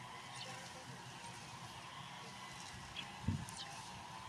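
Quiet outdoor background with a faint steady hum and a few faint high chirps, and a brief low vocal sound from a person about three seconds in.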